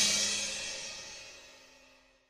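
Final chord and cymbal crash of a punk rock song ringing out and fading away, dying to silence about a second and a half in.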